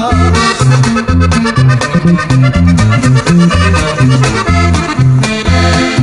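Norteño music: an instrumental accordion passage with quick runs of notes over a bass line alternating between two notes about twice a second, giving a polka-like beat.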